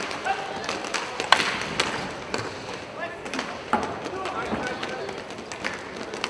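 Inline hockey play in an echoing arena: sharp clacks of sticks on the ball and the rink floor, with players' short shouts to one another.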